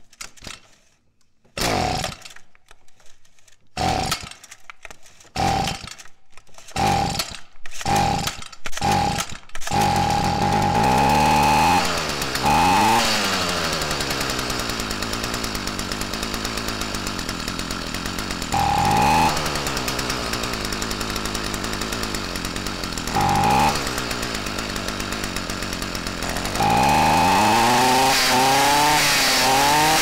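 Stihl FS45C string trimmer's small two-stroke engine being pull-started: about nine short pulls, each firing briefly, before it catches about ten seconds in. It then runs steadily, with the throttle blipped four times so the revs rise and fall, the last one held near the end.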